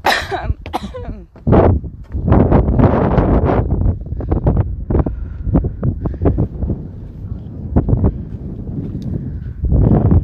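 Wind buffeting a phone's microphone in gusts, with short knocks of footsteps on wooden boardwalk steps. A brief vocal sound comes in the first second.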